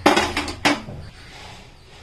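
Metal clatter of a non-stick kadai and steel kitchen utensils on a stainless-steel gas stove: a loud clank at the start and a sharp knock about half a second later.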